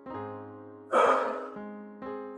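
Soft electric piano chords struck about once a second, with a loud, breathy gasp from a person about a second in.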